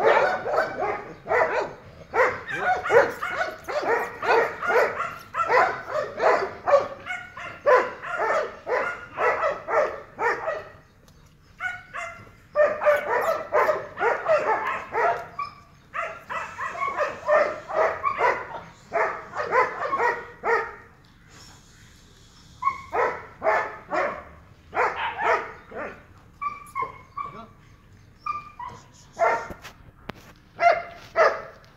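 Dogs barking in rapid runs of several seconds, about four or five barks a second, with short pauses between the runs.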